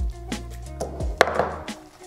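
Cardboard lens box being handled: the lid lifted off and set down, with a few light knocks and a sharp tap a little over a second in, followed by a brief rustle of packaging. Background music plays underneath.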